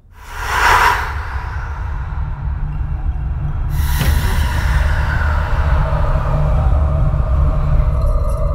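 Horror film sound design: a sharp whoosh about half a second in, then a low steady rumbling drone under faint eerie music, with a second rushing swell near four seconds.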